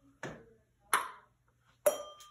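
Ping-pong ball struck by a paddle and bouncing on the table: three sharp clicks, each louder than the last, the last with a short ring.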